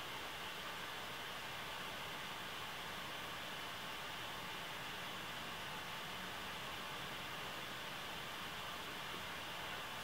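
Steady faint hiss of room tone, even throughout, with no distinct sounds in it.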